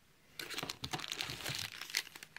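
Plastic packaging crinkling and crackling as it is handled, starting about half a second in: a camera battery in its clear plastic wrap being lifted out of the box.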